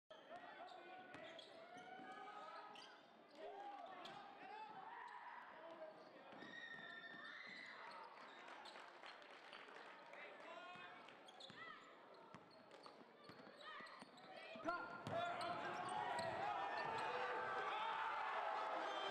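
Basketball game sounds: a ball bouncing on a hardwood court under scattered voices of players and spectators. A sharp thud comes near the end, and the crowd noise grows louder after it.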